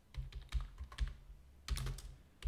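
Typing on a computer keyboard: a handful of separate keystrokes, with a quick run of keys near the end.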